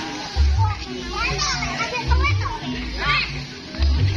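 A crowd of children shouting and chattering over loud procession music, with deep beats falling roughly every one and a half to two seconds.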